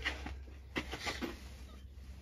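A few short clicks and knocks over a low steady hum.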